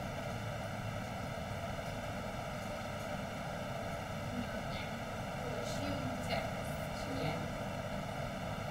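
Steady background hiss with a faint hum, from an open microphone with no one speaking, and a few faint, brief sounds around the middle.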